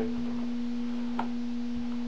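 A steady low-pitched hum holding one even tone, over a faint hiss, with a soft click about a second in.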